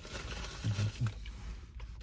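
A man's two brief, faint low vocal sounds from the throat, the first about two-thirds of a second in and the second about a second in, over a steady low hum inside a car.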